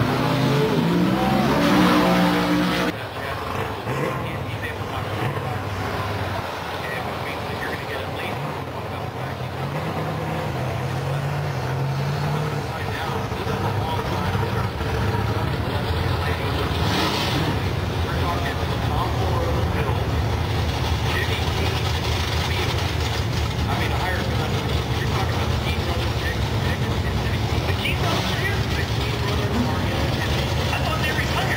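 Drag-strip car engine revving with a rising pitch for the first few seconds, broken off abruptly about three seconds in. An engine note carries on after it, wavering for a few seconds and then holding a steady low drone.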